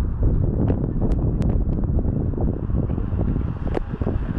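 Wind buffeting the camera's microphone: a loud, choppy low rumble, with a few brief clicks.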